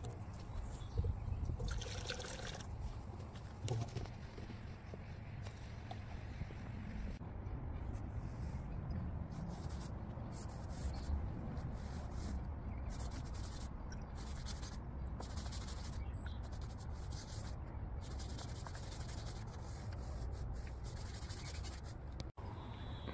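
A paintbrush scrubbing a diluted biocide patio cleaner onto a concrete paving slab, a run of repeated scratchy strokes through most of the stretch. Near the start there is a short spell of liquid being handled and poured.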